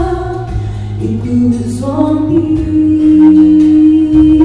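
A woman singing a gospel song solo into a handheld microphone. Her melody steps upward and she holds one long note through the last two seconds.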